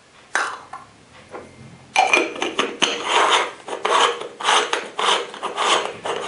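A Chinook 3-cup stovetop espresso maker (moka pot) being screwed together: its metal threads grate in a quick run of rasping twists, after one short scrape near the start.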